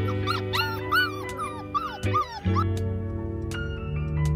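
Puppy whimpering: a quick run of short, high whines in the first half, over steady background music.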